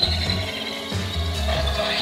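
Electric blender running with a steady whir, over background music with a regular bass beat.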